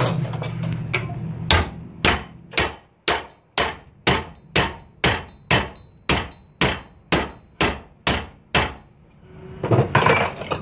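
A hand hammer strikes a red-hot steel knife bar clamped in a bench vise, bending the hot end over at the jaws into a dog leg. About fifteen steady blows come at roughly two a second, starting about a second and a half in, some leaving a faint metallic ring.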